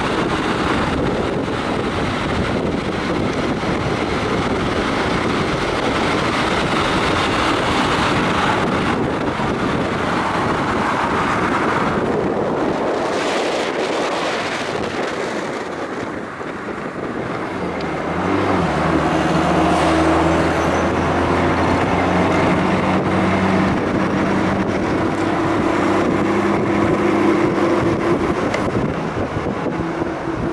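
Mercedes-Benz 190SL roadster on the move: for the first half mostly a rushing of wind and road noise. From about eighteen seconds in, its four-cylinder engine drones steadily at a constant cruising speed, heard from inside the open car.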